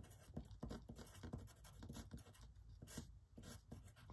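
Pencil writing on paper: a run of faint, quick scratchy strokes as figures are written out.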